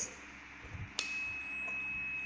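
A digital multimeter's continuity buzzer sounds one steady, high-pitched electronic beep. It starts sharply about halfway through and lasts a little over a second. The beep signals that the thermocouple wire across the probe terminals is read as a continuous connection.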